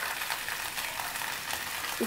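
Potato and raw banana pieces frying in mustard oil in a nonstick pan: a steady sizzle.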